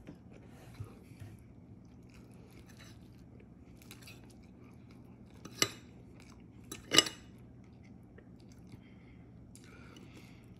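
A metal fork clinking sharply on a ceramic plate twice, about a second and a half apart, as it cuts through a frittata. Faint chewing and small soft clicks fill the rest.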